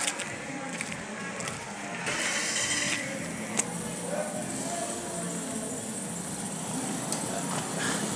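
Night-time town-centre street ambience: a steady wash of traffic and crowd noise with faint distant voices, and a brief click about three and a half seconds in.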